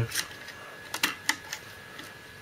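A few short clicks and knocks of hard plastic as the parts of a 1987 M.A.S.K. Wildcat toy truck are pressed into place by hand, three of them in the first second and a half.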